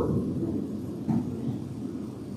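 Low steady room rumble in a church hall, with one faint short sound about a second in.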